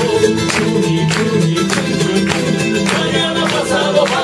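Andean folklore music played live: acoustic guitar and a charango strummed in a steady rhythm with accents about every half second, under a man's singing voice.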